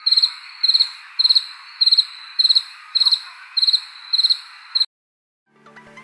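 Cricket chirping sound effect: short trilled chirps about twice a second over a steady hiss, used as a comic 'crickets' gag. It cuts off abruptly about five seconds in, and after a brief silence music begins faintly.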